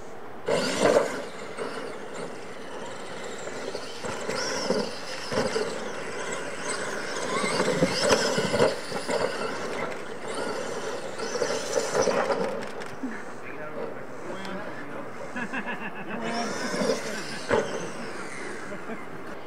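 Radio-controlled monster trucks racing on a dirt track, their motors and drivetrains running with a whine that rises and falls in pitch.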